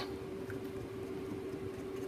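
Quiet room tone with one faint, steady hum; no distinct sound from the paintbrush on the paper.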